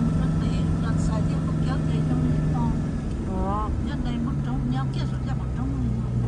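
Car engine and road noise heard from inside the cabin of a moving vehicle. The engine's steady hum steps down in pitch about three seconds in.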